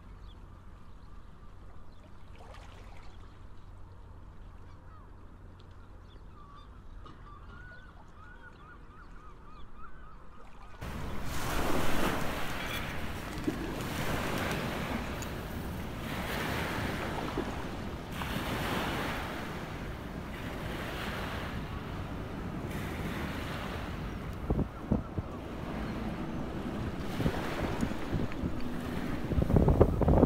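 Wind buffeting the microphone and the River Thames washing at the foreshore, starting suddenly about eleven seconds in and swelling and easing every couple of seconds, loudest near the end. Before that, a quieter stretch with faint bird calls.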